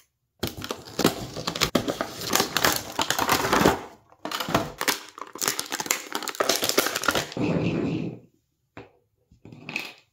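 Clear plastic blister packaging being cut open and handled, crackling and crinkling in two long stretches as an action figure is pried out of its tray.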